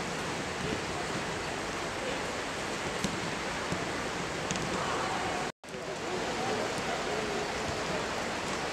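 Steady hiss of rain with faint distant voices over it. The sound cuts out for a split second about five and a half seconds in.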